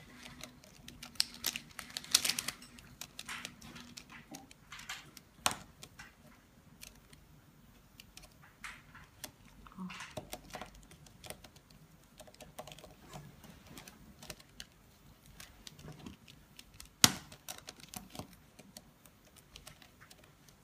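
A mirror cube being turned by hand on a stone countertop: quick, irregular clicks and clacks of the layers turning, with one sharper, louder click about three seconds before the end.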